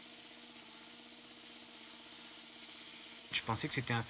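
Dental drill handpiece running at a steady speed with an even whine as it grinds matrix away from a fossil. A man starts speaking near the end.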